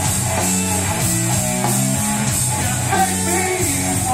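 Live rock band playing loudly: electric guitar chords over a drum kit and bass, the whole band running on without a break.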